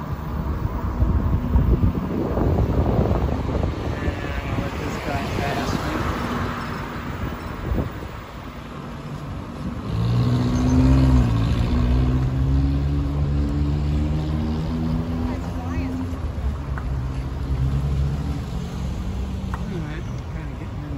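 Wind rumbling on the microphone from a moving bicycle. About ten seconds in, a small 4x4's engine hums steadily as it passes close by, then fades over the next several seconds.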